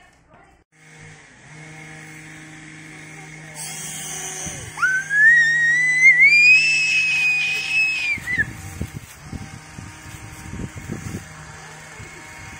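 Toy RC helicopter's small electric rotor motor whining, the pitch climbing as it spins up and holding high for a few seconds before dropping and cutting off. Low bumps and rumbles follow near the end.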